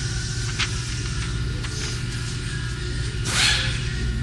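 Steady machine hum from the bandsaw installation, with two faint clicks of keypad buttons being pressed early on and a brief cloth rustle of a sleeve brushing past near the end.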